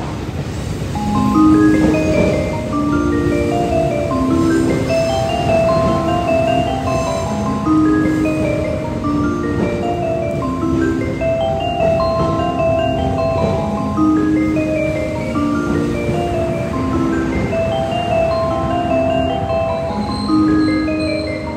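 A station approach melody plays from the platform speakers: a looping tune of short, bell-like mallet notes starting about a second in. Underneath runs the low rumble of a JR 681 series limited express electric train rolling in to the platform.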